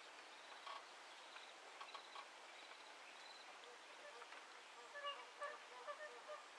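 Magpie geese honking faintly, a scatter of short calls that come more often near the end.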